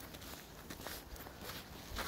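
Faint footsteps on snow.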